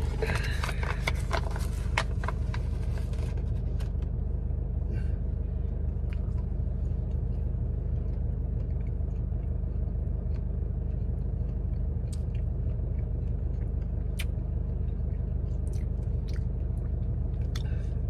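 Plastic snack packet crinkling for the first three seconds or so, then quiet chewing of a dried wild-venison meat snack, with scattered small clicks. Throughout, a car engine idles with a steady low hum.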